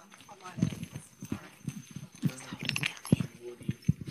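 Faint, muffled voices with scattered knocks and clicks from a handheld microphone being handled while someone tries to get it working.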